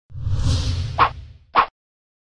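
Logo-reveal sound effect: a deep, rumbling whoosh that swells and fades, with two sharp hits about half a second apart near the end.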